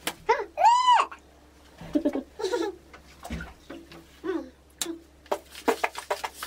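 A young child's wordless high-pitched vocal sounds, including one long squeal that rises and falls about a second in, with a few sharp clicks and taps in between.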